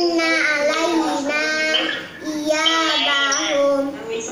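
A young girl chanting Quran verses from memory in a melodic recitation style, two long held phrases with a short breath about two seconds in.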